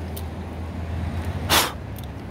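A steady low rumble, with one short, sharp breath through the nose about one and a half seconds in.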